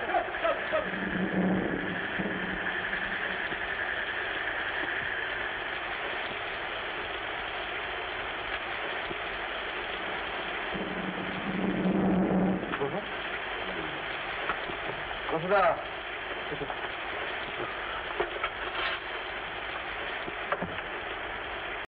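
Heavy rain falling as a steady, even hiss throughout, with a few brief voices rising over it about a second in, around twelve seconds and around fifteen seconds.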